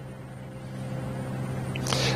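Steady low hum of a running engine, slowly getting louder.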